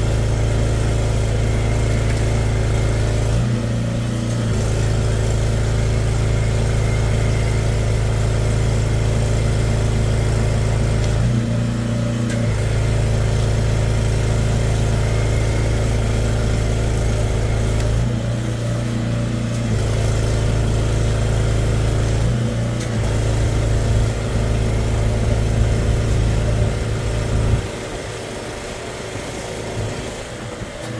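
Drain jetter's engine running steadily under load, its note shifting briefly four times. Near the end the engine note falls away and the sound grows quieter.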